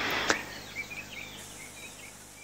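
Faint short bird chirps over a quiet background hiss.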